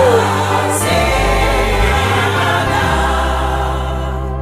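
Gospel song with choir voices holding long chords over a sliding bass line, gently fading as the song closes.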